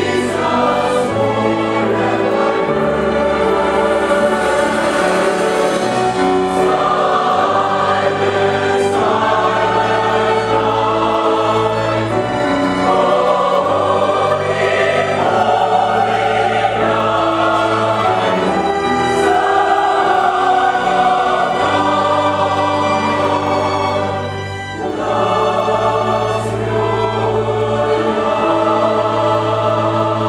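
Mixed choir singing sustained chords, accompanied by strings and piano over a steady bass line; the music softens briefly late on, then swells again.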